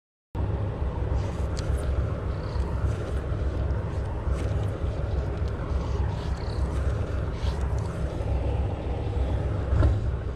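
A steady low rumble of a running engine, cutting in abruptly a fraction of a second in.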